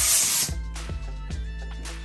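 Air hissing out of an inflated 260 twisting balloon as some of its air is let out, stopping about half a second in, over steady background music with a beat.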